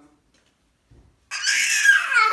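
A toddler's loud, high-pitched shriek, starting suddenly a little over halfway through, its pitch wavering up and down.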